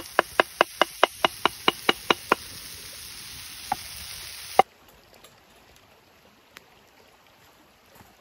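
A knife chopping roasted eggplant on a wooden cutting board: quick, even strokes about five a second that slow and stop after about two seconds, then two more single strokes. Under them a steady high hiss from the pan of peppers sizzling over the wood fire, which cuts off sharply a little past halfway, leaving a much quieter background.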